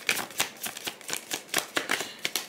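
A deck of tarot cards being shuffled by hand, a quick run of soft card clicks and flutters, to draw a clarifier card.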